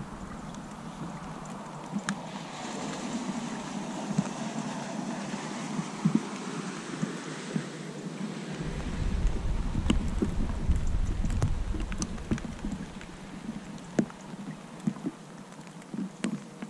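A boat engine droning on the river, swelling louder about halfway through and easing off toward the end, over a steady noise haze with a few light clicks.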